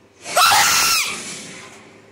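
A person's loud, harsh scream starting about a quarter second in, lasting under a second and then trailing away.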